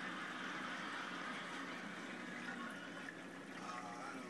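Steady rush of running water in a reef aquarium fed by a sump, loudest in the first half and easing off near the end.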